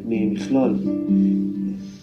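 Acoustic guitar music playing held notes, with a voice over it.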